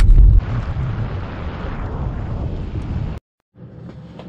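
A car driving on a gravel road, heard from inside the cabin: a heavy low rumble, then a steady hiss of tyre and road noise. It cuts off suddenly about three seconds in.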